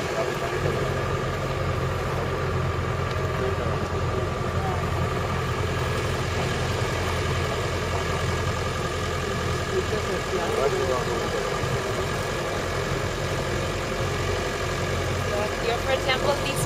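Engine of an open-top utility vehicle running steadily at low speed on a dirt track, a constant low drone with road noise, heard from inside the open cab.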